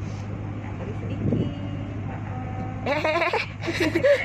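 A steady low hum throughout, with a short thump just after a second in and a brief voice sound near the end.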